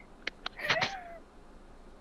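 Two faint clicks, then a single short gliding call about half a second long.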